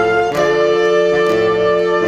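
Saxophone ensemble playing sustained chords together, moving to a new chord about a third of a second in.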